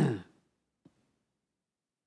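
A man's voiced sigh, falling in pitch, over the first half second. After it there is near silence, broken by a faint click a little under a second in.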